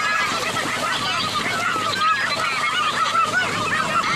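Churning water from a netted school of fish thrashing at the surface, under a steady din of many overlapping short, wavering calls.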